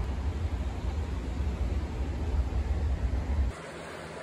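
Honda Prelude's engine idling, heard at the exhaust: a steady, deep running sound that cuts off suddenly about three and a half seconds in.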